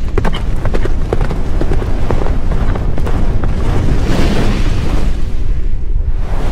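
Cinematic logo-reveal sound effect: a loud, deep rumble with a scatter of sharp clicks and knocks over the first three seconds, swelling into a brighter rushing hiss about four seconds in.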